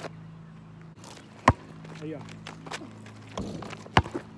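A basketball bouncing once on asphalt, a sharp knock about one and a half seconds in, and again near the end, over a steady low hum.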